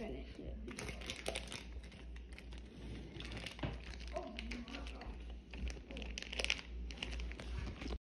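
A chocolate-bar wrapper crinkling faintly in many small, irregular crackles, with handling noise close to the phone's microphone.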